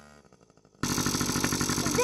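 Yamaha PW50's small 50cc two-stroke engine idling steadily, starting suddenly about a second in after near silence.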